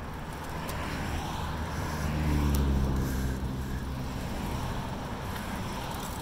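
A motor vehicle's engine hum passing, swelling to its loudest about halfway through and then fading, over steady wind and rolling noise from a moving bicycle. A couple of sharp clicks.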